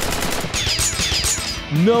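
Dubbed machine-gun sound effect: a rapid burst of shots during the first half second, followed by several high falling whistles. Near the end a deep voice cuts in.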